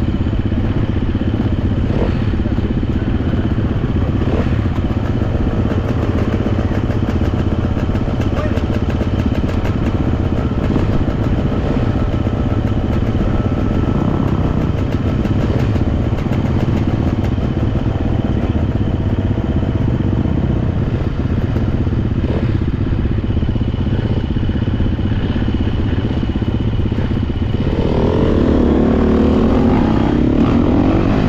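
Dirt bike engine idling steadily, then revving up and pulling away about two seconds before the end.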